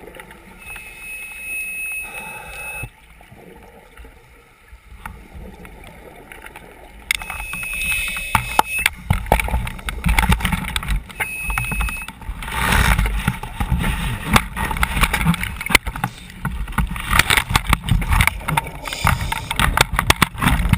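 Underwater sound through a camera housing, typical of a scuba diver's regulator breathing. Three times a steady hissing whistle of an inhalation comes through, and from about seven seconds in there are louder bursts of crackling, rumbling exhaled bubbles.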